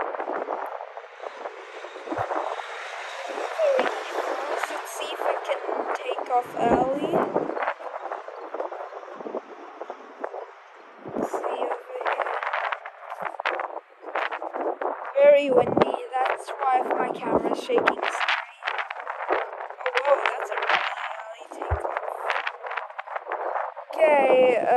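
Indistinct chatter of voices, with the noise of an Airbus A350-900's jet engines at takeoff power running under it during the first few seconds.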